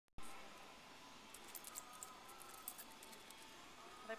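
Near silence: faint outdoor background hiss with a few light, high ticks scattered through the middle.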